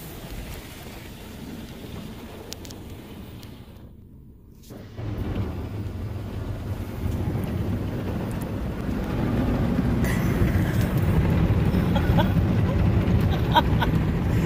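Automatic car wash heard from inside the car's cabin: water and foam spraying over the glass, then, from about five seconds in, a louder, deep rumble that keeps building as the wash equipment works over the car.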